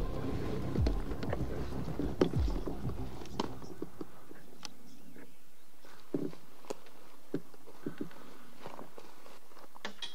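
Background music with low, falling tones fades out over the first few seconds. After that come scattered footsteps crunching dry grass and the snap and crackle of twigs.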